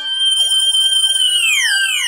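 Electronic sound effect: held high tones over a fast-wavering, siren-like tone, then a run of repeated falling pitch slides from about halfway through, as the scene ends.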